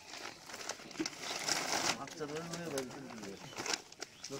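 Indistinct voices of people talking nearby, with crinkling and rustling of plastic carrier bags being handed over.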